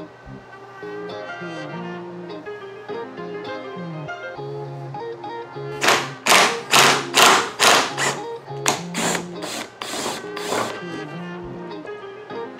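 Impact wrench fired in a rapid run of about a dozen short bursts, spinning the strut's top nut off, over background guitar music.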